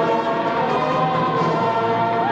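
Orchestral film score with a choir singing long, sustained notes.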